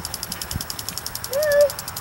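Insects chirping in a steady, rapid high pulse, about nine beats a second. One short pitched call that rises and falls comes about a second and a half in and is the loudest sound.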